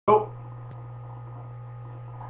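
A brief voice sound at the very start, then a steady low electrical hum.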